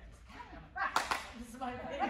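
One sharp hand clap about a second in, among a person's wordless excited voice sounds.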